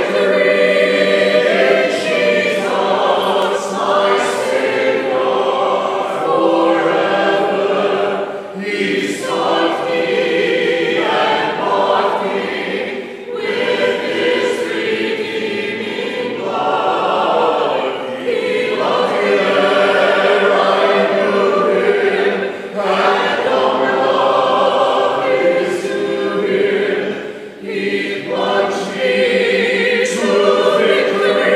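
A church congregation singing a hymn together, many voices at once, with short breaks between the lines.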